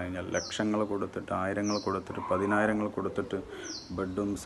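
A man talking, with a bird chirping in the background: three short, high chirps that sweep downward in pitch.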